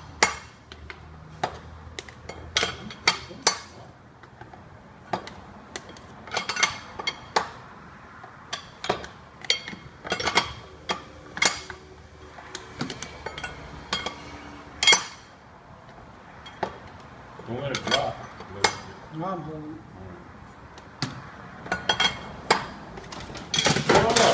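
Irregular metallic clinks and sharp clicks of a wrench and engine parts being handled in a truck's engine bay, scattered a few to the second with short pauses between.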